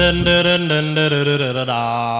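1950s doo-wop vocal group singing a held close-harmony chord that slides down in pitch, with the bass and drum backing dropping out just after the start.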